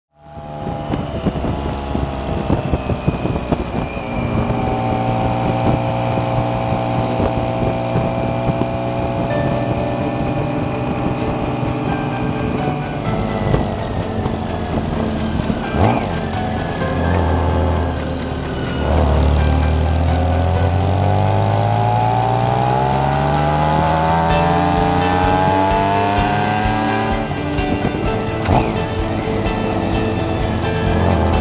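BMW K1600 GTL's inline-six engine running under way, with road noise; its pitch holds fairly steady for the first part, dips around the middle, then climbs steadily for several seconds before dropping back near the end.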